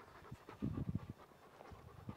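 A large Labrador retriever panting, a short run of quick breaths about half a second in; faint.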